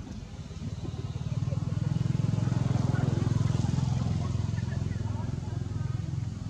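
A motor vehicle's engine running as it passes by, growing louder over the first two seconds and fading toward the end.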